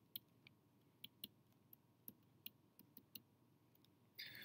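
Near silence broken by faint, irregular light clicks and taps of a stylus on a digital writing surface as words are handwritten.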